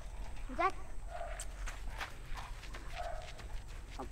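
Light footsteps of a person and a German Shepherd walking on a dirt track: a series of short steps. A brief faint rising vocal sound comes about half a second in.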